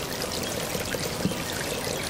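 Shallow muddy pond water splashing and trickling steadily, its surface stirred by live fish.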